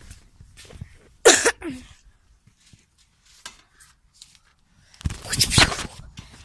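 A sharp, breathy vocal burst about a second in, like a sneeze or a sudden exclamation. Near the end comes about a second of rustling and rumbling from the phone being handled, its microphone rubbed or covered.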